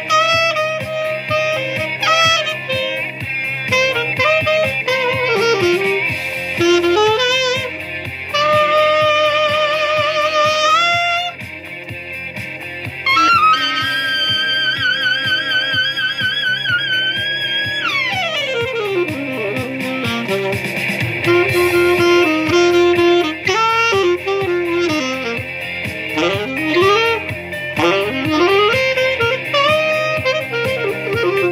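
Saxophone played live over a recorded rock track with guitar. About halfway through, a long wavering held note gives way to a long falling glide.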